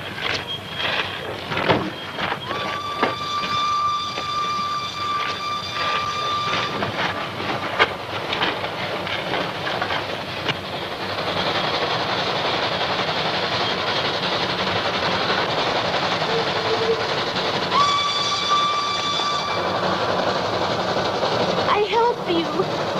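A train's whistle blows one long steady note a few seconds in, after some scattered knocks. Then the rumble of an approaching train builds up and stays loud, and the whistle sounds again briefly near the end.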